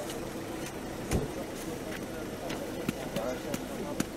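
Indistinct voices of several people talking, with a single thump about a second in.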